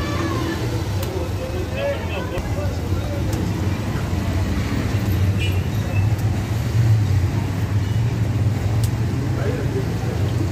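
Low, steady rumble of road traffic, louder in the second half, with voices in the background. Under it runs the hiss of dough frying in a wok of hot oil.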